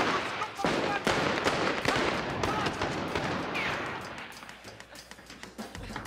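Handgun gunfire from several shooters, shots coming in quick succession with men shouting over them. The shooting dies away about four seconds in.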